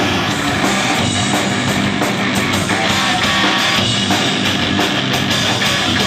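Rock band playing live, an instrumental passage of electric guitar, bass guitar and drum kit with no singing.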